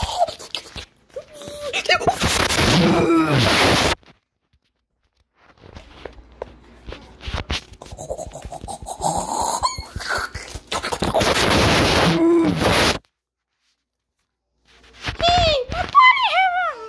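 Loud, harsh, distorted meme-video sound effect: a noisy burst with sliding voice-like pitches. It plays twice and cuts off abruptly into dead silence each time. Near the end comes a short cry with rising and falling pitch.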